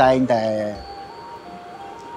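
A man's speech ends in under a second, leaving faint background music: a simple, thin melody of held notes stepping between a few pitches, like a chime tune.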